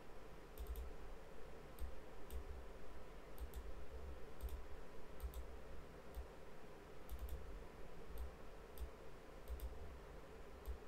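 Computer mouse button clicking while trendlines are drawn on a chart: single clicks and quick double clicks, roughly one every half second to a second, each with a faint low thud under it.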